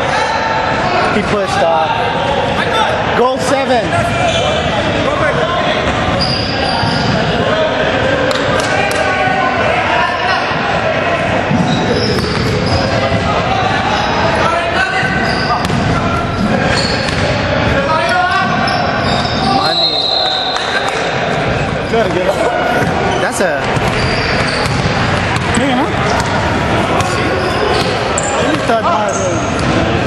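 Basketball game sounds in a gymnasium: a basketball bouncing on the hardwood court with scattered sharp knocks, over constant chatter of players and spectators echoing in the hall.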